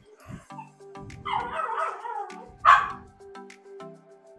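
A dog vocalising: a short rough grumble about a second in, then a single sharp bark past the middle. Soft background music with held notes runs underneath.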